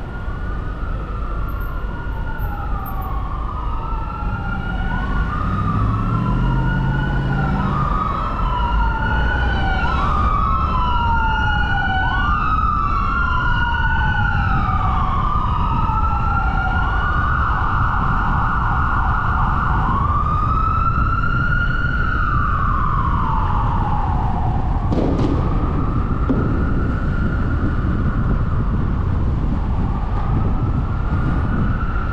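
An emergency vehicle's siren wailing, rising and falling about every two seconds. Later it holds a longer tone, then slides down and breaks off, over steady low road and traffic rumble.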